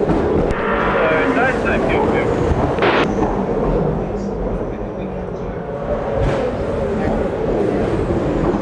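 Race-car team radio: the driver's short question comes through thin and crackly about a second in, ending with a click. A steady low rumble of race-car engine noise runs underneath.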